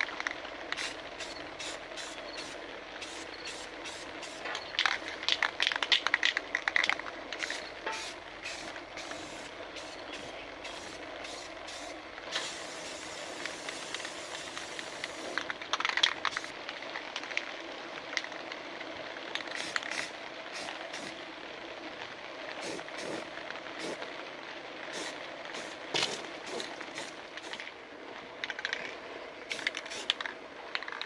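Aerosol spray paint can hissing in many short bursts, with one longer spray of about three seconds near the middle, over a steady background hum.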